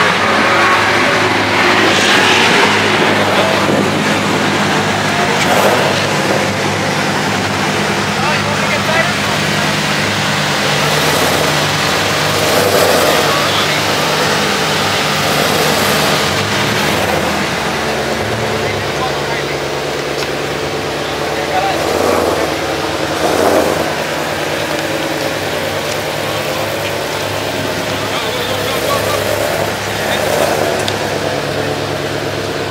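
Several performance car engines running at idle as the cars creep past at low speed, a steady low drone, with people talking over it.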